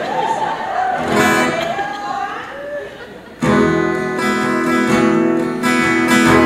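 Voices talking on stage, then about three and a half seconds in a guitar comes in suddenly with chords that ring on steadily as the music starts.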